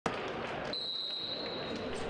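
Referee's whistle blown in one steady, high note lasting about a second, signalling the futsal kickoff, over the murmur of an indoor arena crowd.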